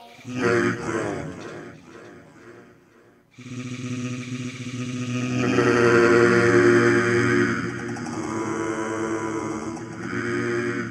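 Camel Audio Alchemy software synth in granular mode, playing a sampled spoken word frozen into a held, voice-like tone from a keyboard. A first note fades away by about three seconds in, then a new note starts and is held, growing brighter midway before easing back.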